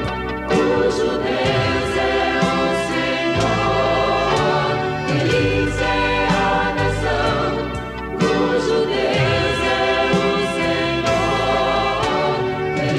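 A woman singing a Portuguese-language gospel song into a microphone over full instrumental accompaniment with backing voices, with a steady bass line and beat.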